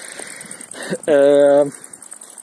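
A man's voice holds one steady hesitation sound, like 'ehh', for about half a second, starting about a second in.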